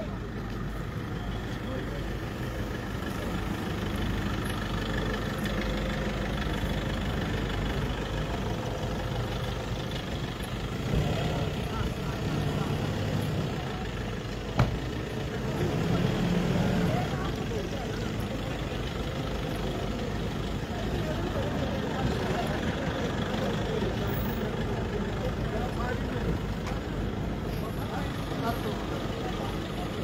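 Pickup truck engines running at low speed, with a steady hum and people's voices murmuring around them. A single sharp click comes about halfway through.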